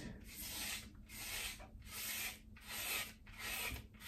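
Gillette Fusion cartridge razor scraping through shaving cream and stubble on a bald scalp: about five short, faint strokes, one roughly every three-quarters of a second.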